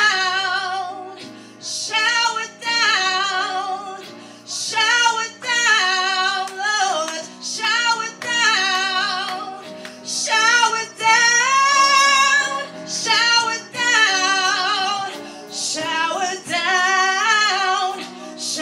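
A woman singing a worship song solo into a handheld microphone, in long sustained phrases with short breaks between them, over soft held accompaniment chords.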